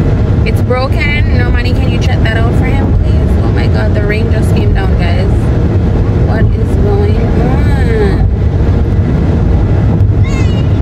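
Steady road and wind rumble inside a moving car's cabin, with voices over it that are too unclear to make out as words.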